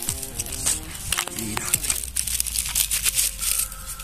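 Dry grass and thistle stems crackling and rustling as they are pushed aside and trodden, many short crackles in quick succession, over faint background music.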